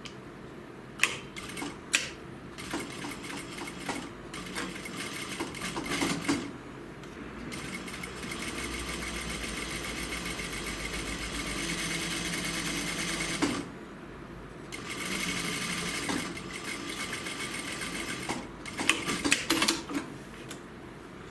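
Sewing machine stitching a pocket flap in place through jacket fabric. It runs in stretches: short bursts early on, a steady run of about six seconds, a brief stop, then a shorter run. A few sharp clicks come near the start and near the end.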